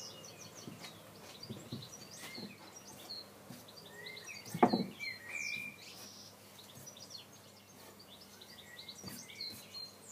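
Small birds chirping repeatedly in the background, with one sharp knock about halfway through.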